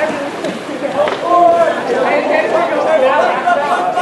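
Several voices overlapping, calling out and chattering without a pause, from the people around a water polo game.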